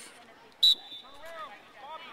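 A single sharp knock about a third of the way in, followed by a faint, high, steady tone that rings on for about a second, with distant children's voices in the background.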